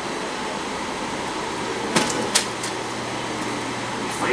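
Steady background hiss with a faint low hum, broken about halfway through by three short crisp clicks or crinkles as the gift box is handled.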